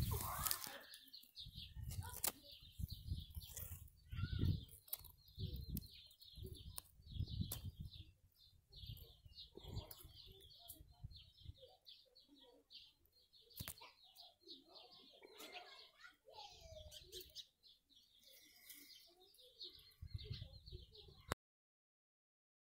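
Outdoor garden ambience: birds chirping, with many short high chirps all through, under low thumps and rumbles of the handheld camera being moved. The sound cuts off suddenly near the end.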